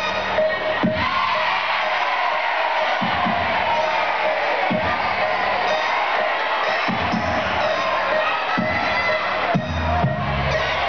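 A school band playing live, with low drum hits every second or two, over a cheering, shouting crowd.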